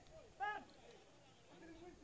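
Two brief, faint shouts from players on the pitch, each a single short call that rises and falls in pitch, one right at the start and one about half a second in.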